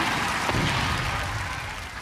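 Studio audience applauding, fading out.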